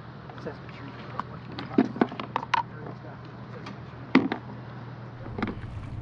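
Scattered short clicks and knocks of fishing gear being handled by hand, over a steady low hum.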